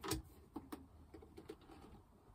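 A few faint clicks from the front-panel light button of an Enginstar R350 portable power station being pressed to step through its light modes, the loudest right at the start and two more about half a second in, followed by fainter ticks.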